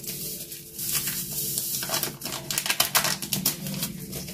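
Paper sachet of vanilla sugar crinkling and crackling as it is shaken and the powder is poured out onto a terracotta dish, a dense run of small crisp ticks.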